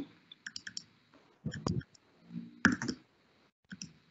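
Faint clicking in four short clusters about a second apart, heard over a video-call line while the speaker has a connection problem.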